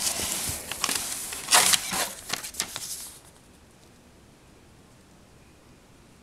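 Cardboard box being handled: scraping and rustling of cardboard with a few sharper knocks, the loudest about a second and a half in, stopping about three seconds in.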